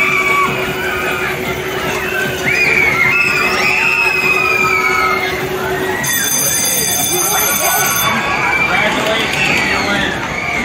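Busy arcade din around a water-gun race game: many overlapping voices and children shouting. A steady hum runs for the first six seconds, and a high electronic tone sounds from about six to eight seconds in.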